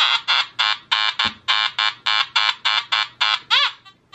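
Nokta Makro Anfibio Multi metal detector sounding a rapid, regular series of short buzzy tones, about three or four a second, with one sweeping tone near the end. This is the low-ID 'grunt' that its Gen Delta all-metal mode gives for target IDs of 15 or under the tone break.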